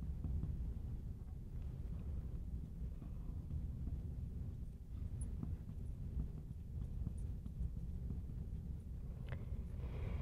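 Low steady room hum with a few faint taps and scratches of a marker writing on a glass lightboard.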